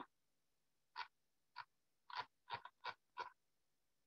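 Faint computer mouse clicks: about seven short clicks in an irregular run over the last three seconds, some in quick pairs.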